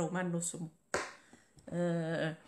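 A woman's voice speaking, broken about a second in by a single sharp click and a short pause.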